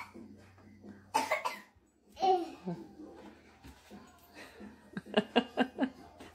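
A person's laughter: a short breathy, cough-like burst about a second in, a brief voiced sound a second later, and a run of quick laughing pulses near the end.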